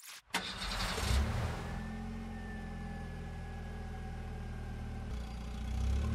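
A car engine starting: a click, a sharp catch, a brief rev, then a steady idle.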